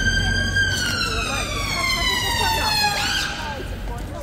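Emergency vehicle siren in wail mode on the street: one long tone that climbs slowly, then slides steadily down in pitch and cuts off about three seconds in.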